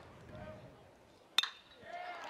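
Metal college baseball bat hitting a pitched ball: one sharp, short metallic crack about one and a half seconds in, over faint crowd murmur.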